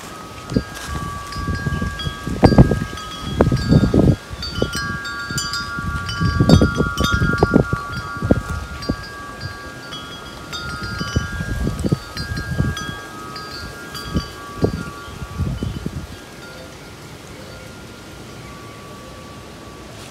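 Wind chimes ringing, several overlapping held tones sounding together, with gusts of wind buffeting the microphone that die down near the end.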